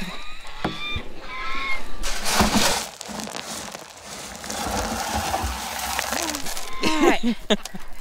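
A scoop digging into grain feed at the bottom of a plastic barrel: a few scrapes and knocks about two seconds in, then several seconds of rustling and rattling feed, muffled inside the barrel.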